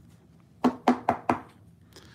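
Four quick plastic clicks and taps, a baseball card being worked into a rigid clear plastic top loader.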